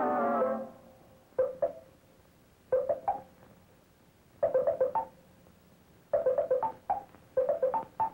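Commercial jingle of short plucked-string notes played in bursts to imitate a coffee percolator perking, the bursts growing longer and closer together. A held note fades out in the first half second.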